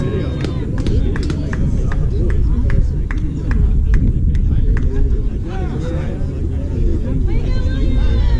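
Distant voices of people calling out and talking, too far off for words, over a heavy low rumble, with a few sharp clicks scattered through.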